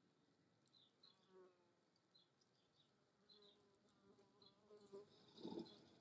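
Faint buzz of a flying insect passing close, swelling from about four seconds in and loudest about five and a half seconds in.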